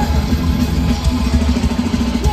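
Loud live crossover thrash band playing: distorted electric guitars, bass and drums through a festival PA, recorded from the crowd.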